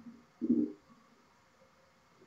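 A man clearing his throat behind his hand: a short sound right at the start, then a louder one about half a second in.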